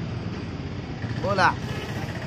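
Steady street background noise with one short vocal call, rising and falling, about one and a half seconds in.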